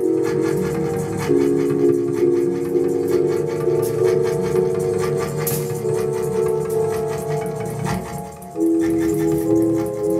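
Electronic music of held, steady tones. The chord changes about a second in and again near the end.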